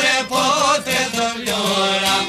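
Albanian folk wedding song: a man's voice singing a wavering, ornamented melodic line over plucked long-necked lutes.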